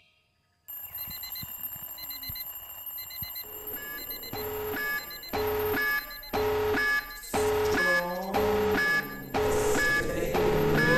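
Electronic alarm clock going off: it starts with faint rapid high beeps, then settles into louder, longer beeps about once a second, growing louder as it goes.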